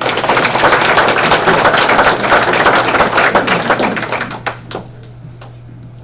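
Audience applauding: dense clapping that starts all at once, holds for about four seconds, then thins out and dies away.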